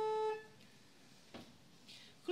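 Church organ holding a sustained chord that breaks off about a third of a second in, then quiet room tone with one faint short noise midway.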